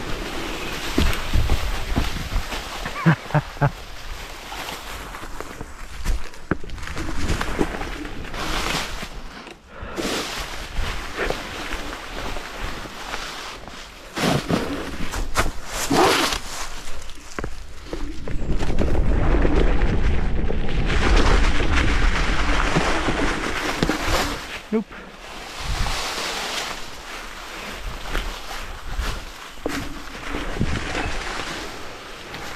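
Electric scooter ridden over dry fallen leaves and frozen, bumpy forest ground: wind rushing on the microphone, leaves rustling under the tyres, and the scooter rattling, with a few sharp knocks over bumps, around three seconds in and again in the middle.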